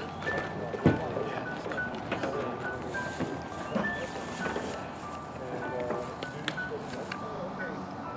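Background music with short, clear notes, laid over people talking in the background, and a single sharp knock about a second in.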